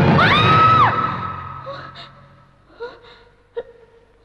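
A woman's long, high cry over fading music in the first second, then several short, startled gasps for breath.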